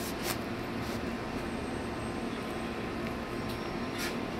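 Steady background hum and noise with a few faint clicks in the first second.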